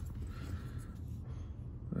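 Quiet, steady low background rumble with a few faint handling noises, and no distinct event.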